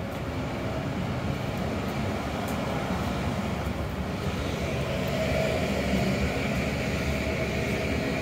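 Steady street traffic hum from cars on a city street, with a car engine close by; a faint steady whine comes in about halfway through.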